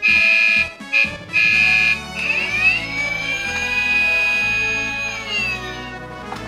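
Electronic siren sound from a battery-powered toy police car's speaker: a few short steady high beeps, then a tone that glides up, holds, and drops away near the end. Background music with a stepping bass line plays underneath.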